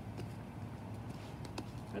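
Quiet outdoor background: a steady low hum with a couple of faint ticks, one just after the start and one about one and a half seconds in.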